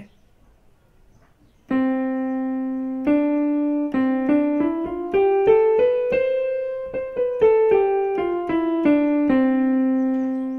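Yamaha portable keyboard on a piano voice playing the C major scale with the right hand. After a quiet start it sounds a held middle C and a D, then climbs one octave from C in even steps, holds the top C and comes back down to a held C.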